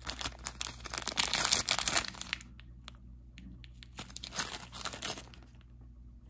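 Clear plastic packet of metal zipper pulls crinkling as it is handled and turned over, in two bouts of rustling with a quieter gap between.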